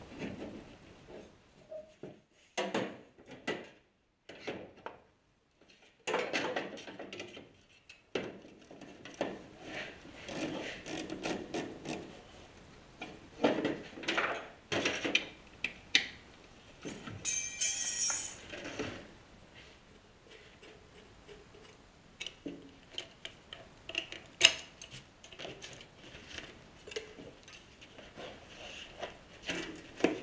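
Hand tools and metal parts being worked while a turbocharger is unbolted and handled: irregular metal clinks, knocks and scrapes, with a short run of rapid ratchet clicks about seventeen seconds in.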